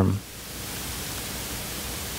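A man's word ends just at the start, followed by a steady, even hiss of background noise that rises slightly in level.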